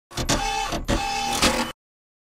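Short intro sound effect for a logo card: a noisy burst in two similar halves, each carrying a brief steady tone, cut off abruptly near the end.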